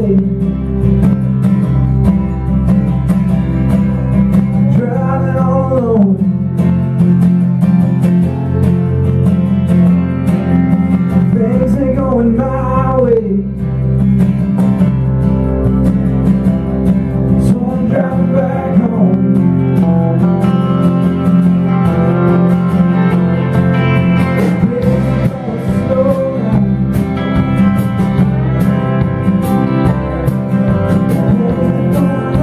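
Country band playing a song live: electric guitar, two strummed acoustic guitars and a lap steel guitar.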